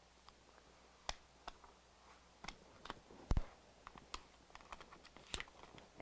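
Faint, scattered clicks and crinkles of a CAD-CUT Premium Plus heat-transfer vinyl's plastic carrier sheet being handled and peeled warm off a polyester shirt just after pressing, with one duller knock about three seconds in.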